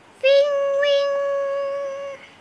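One high, steady pitched note, starting about a quarter second in and held almost two seconds without bending, like a drawn-out meow or a sung tone.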